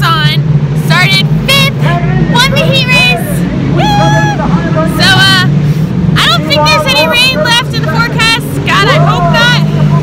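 A woman talking over the steady low drone of race car engines running at a dirt track.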